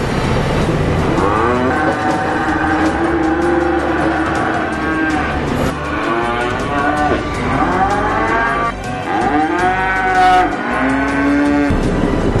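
Cattle mooing: a string of long, drawn-out calls, several overlapping, from about a second in until near the end.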